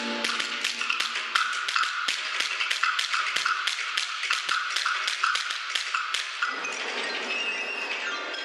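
Wind ensemble percussion playing a fast run of dry, pitched taps, about four or five a second. The taps stop about six seconds in and a softer sustained ensemble texture follows, with faint high ringing tones entering near the end.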